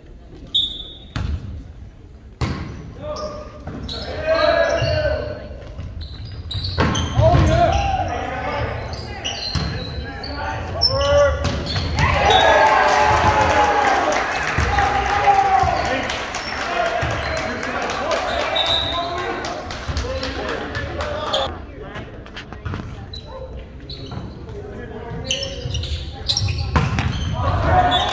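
A volleyball bounced on a hardwood gym floor, a few sharp smacks near the start, then a rally of ball hits under the shouting of players and spectators, loudest in the middle, echoing in a large gym.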